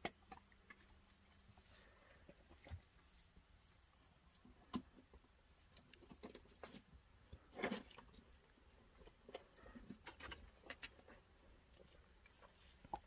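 Near silence broken by scattered faint clicks and scuffs, with one slightly longer scrape about two-thirds of the way through.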